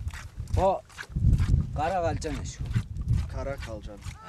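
Goats bleating in short, wavering calls, mixed with women's voices speaking Tuvan, over a low rumble of wind on the microphone.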